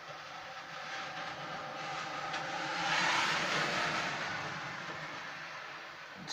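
A vehicle passing on a wet road: tyre hiss swells to a peak about three seconds in, then fades away.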